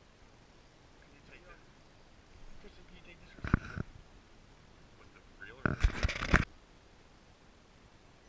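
Two short bursts of knocking and clatter from the camera being handled, a small one about three and a half seconds in and a louder one about six seconds in, with a brief muffled voice among them.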